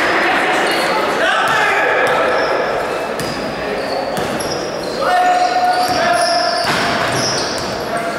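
A basketball being dribbled on a sports hall's wooden floor, with short high squeaks and players' voices calling out in the echoing hall. A long held shout comes about five seconds in.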